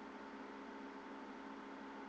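Faint steady hiss with a low, constant electrical hum: the recording's background noise, with no handling sounds or other events.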